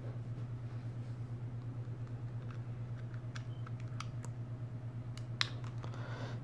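Small sharp plastic clicks and taps as a micro SD card is pushed into a dashcam's slot and the unit is handled, coming mostly in the second half. They sit over a steady low hum.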